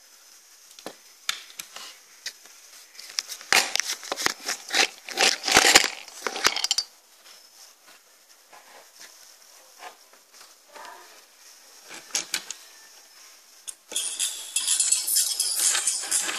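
Clicks and clinks of a small metal diecast car being handled and set down on a wooden desk, with a dense flurry between about 3.5 and 7 seconds in and sparser clicks after. About two seconds before the end a continuous, thin, high-pitched sound starts suddenly.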